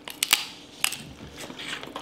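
Crab leg shell cracking and crunching as it is bitten and broken by hand, close to the microphone: several sharp cracks spread across the two seconds.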